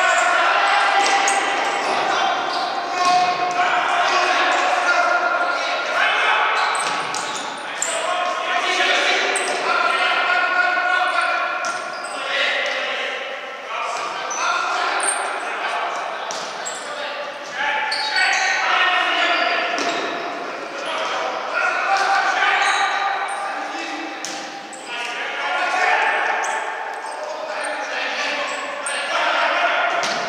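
Players' voices shouting and calling across a reverberant sports hall during a futsal match, with sharp knocks of the ball being kicked and bouncing on the wooden floor.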